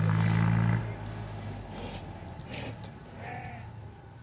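A bull's long, low moo that breaks off a little under a second in.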